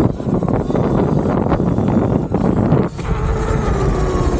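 Wind buffeting the microphone with road noise from a Sur-Ron electric dirt bike ridden along a tarmac lane. About three seconds in the wind noise drops and a faint steady whine from the bike's electric motor comes through.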